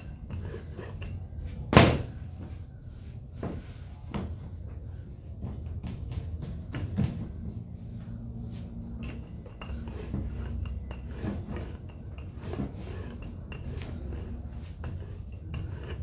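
Rolling pin stretching cronut dough on a floured work table: scattered light knocks and rubbing, with one sharp knock about two seconds in.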